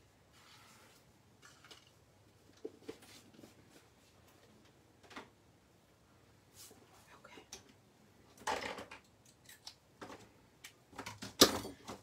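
Scattered light knocks and rustles of craft supplies being picked up, moved and set down on a worktable, with a louder rustle about eight and a half seconds in and a sharp clack near the end.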